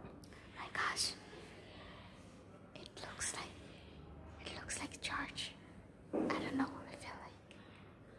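Whispered speech, close to the microphone, in four short bursts over a faint room hiss.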